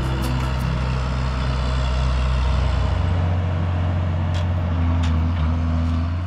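John Deere 7600 tractor's diesel engine running as it pulls away with a mower, a steady low drone that changes note about halfway through.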